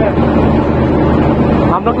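Bus engine running with a steady low drone while under way, heard inside the cabin near the front. A man's voice begins near the end.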